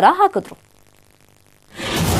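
A female news anchor's voice ends about half a second in, then about a second of silence, then a swelling whoosh of a broadcast transition sound effect starts near the end as the bulletin cuts to its title graphic.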